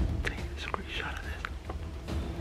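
A man whispering close to the microphone, with a steady low rumble underneath.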